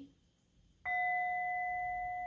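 Metal singing bowl struck once with a mallet, a little under a second in, ringing on with a steady pitched tone and higher overtones that fade slowly.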